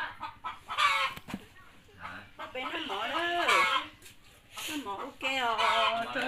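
Domestic chickens clucking, a few drawn-out calls, loudest about halfway through and again near the end.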